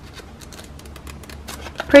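Soft paper ticks and rustles from fingers handling a rainbow-shaped sticky-note pad, coming thicker in the second half.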